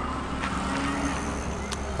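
A motor vehicle going past on the street: a steady hum with a faint held tone that rises slightly in the first second.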